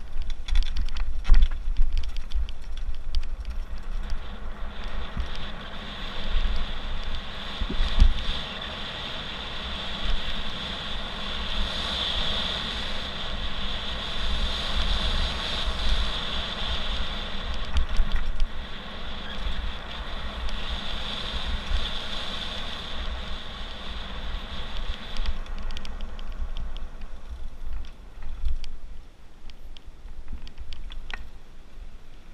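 A mountain bike ridden fast down a gravel road, heard from a camera on the rider: wind rumbling on the microphone, tyres on loose gravel, and knocks and rattles over bumps. A steady high buzz comes in about five seconds in and fades out about twenty-five seconds in.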